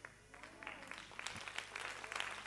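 Congregation starting to applaud: scattered hand claps begin about half a second in and build into fuller, still faint clapping from many hands.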